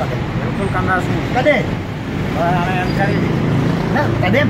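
Short bursts of speech, twice, over a steady low hum.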